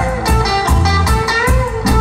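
Live reggae band playing, with a Stratocaster-style electric guitar out front playing gliding, bent notes over a steady bass and drum beat.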